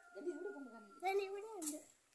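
Faint bird calls: a thin steady whistle through the first second, then a short, low, cooing call about a second in.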